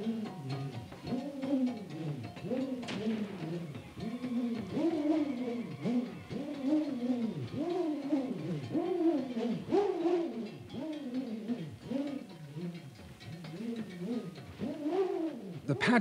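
A bullroarer whirled on its cord gives a pulsing hum that swells and sinks in pitch about once a second with each swing. Its sound announces that the mother of masks will leave her cave that night.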